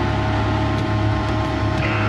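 A lo-fi cassette demo recording playing a sustained, droning passage: a steady low drone with held tones under tape hiss, and a higher tone coming in near the end.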